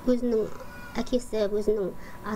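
A woman's voice speaking in drawn-out syllables that glide in pitch.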